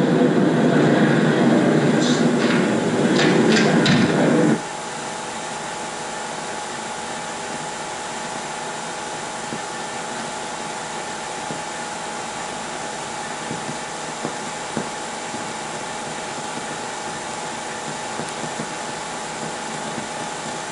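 The film's loud, dense closing soundtrack cuts off abruptly about four and a half seconds in. What follows is the steady hiss and faint hum of a 16mm print's blank optical sound track, with a few small crackles.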